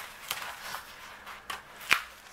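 Pages of a paperback colouring book being flipped by hand: a few short papery flicks and rustles, the loudest just before the end.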